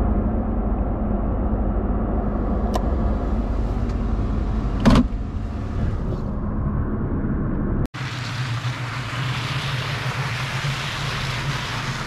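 Toyota Tacoma pickup engine running steadily as the truck pulls away loaded with firewood, heard from inside the cab, with a light click a few seconds in and a knock about five seconds in. After a sudden cut near the end, the engine is heard from outside under a steady hiss.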